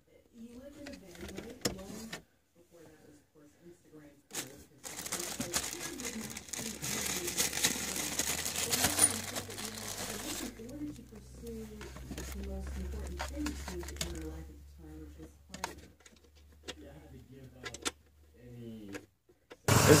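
Faint, indistinct voices murmuring in the background, with scattered clicks and knocks of hands handling wiring and plastic trim under a car's dashboard. There is a stretch of hiss over a low hum partway through.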